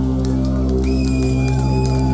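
Live rock band's amplified electric guitars holding a loud, droning sustained chord. A thin, high steady tone joins about a second in.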